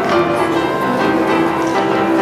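Grand piano played live in a fast boogie-woogie, with dense, rapid notes ringing over a steady bass.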